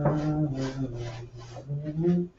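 A man humming a tune in low, held notes, over the dry scrub of a paintbrush working paint onto canvas in short repeated strokes.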